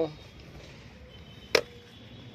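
A single sharp click about one and a half seconds in, over a faint steady background.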